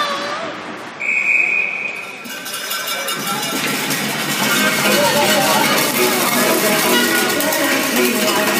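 Referee's whistle blown once about a second in, a single steady shrill tone lasting just over a second, stopping play. About three seconds in, arena music over the public-address system comes in and keeps playing.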